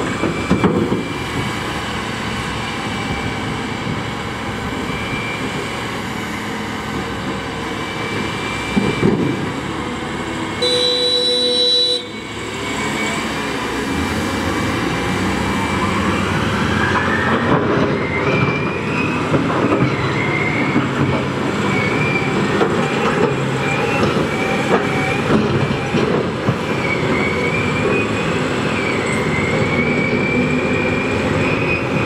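Heavy diesel machinery running steadily as a Liebherr R980 SME excavator loads a CAT 773B quarry truck with limestone. About eleven seconds in, a horn sounds once for just over a second. From about fourteen seconds a whine rises and then holds high as the loaded CAT 773B pulls away.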